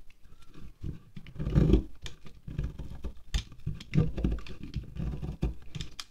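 Serrated knife scraping shavings off a white-and-green wax candle in short, irregular strokes, the wax crackling and crumbling as flakes drop onto the pile below. The strongest stroke comes about a second and a half in.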